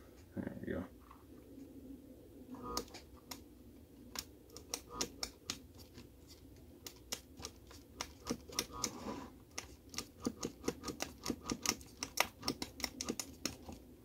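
Electrical arcing from a fan's live mains wire being struck against another wire: a run of sharp, irregular snapping clicks that starts a few seconds in and comes faster and thicker toward the end.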